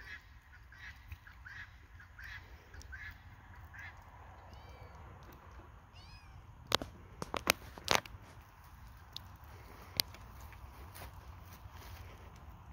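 Faint short honking bird calls repeating about once a second for the first few seconds, then a couple of higher chirps. A cluster of sharp clicks follows a little past halfway, with one more later; these clicks are the loudest sounds.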